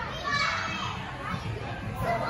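Children shouting and calling out as they play, with the loudest burst about half a second in.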